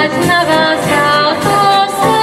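A children's choir singing in several voices, with keyboard accompaniment.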